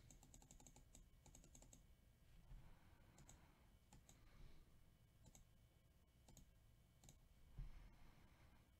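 Near silence with faint clicking from a computer keyboard and mouse: a quick run of clicks in the first two seconds, then single clicks about once a second.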